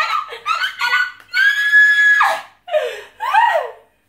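An excited, high-pitched voice squealing and laughing: a few short calls, then one long held squeal, then two falling whoops near the end.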